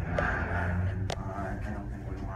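Heights hydraulic elevator cab travelling up its shaft, with a low steady hum from the hydraulic drive. Two sharp clicks come through, one just after the start and one about a second in.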